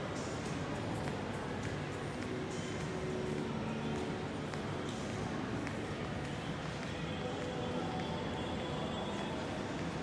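Shopping mall ambience: a steady murmur of shoppers' voices in a large echoing hall, with faint background music playing over it.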